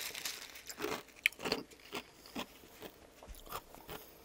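Small fountain-drink ice crystals being crunched between the teeth, with a string of irregular crisp crunches.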